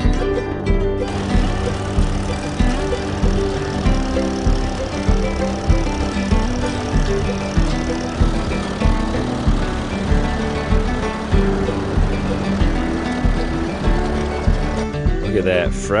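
Country-style background music with guitar and a steady beat, fading out near the end.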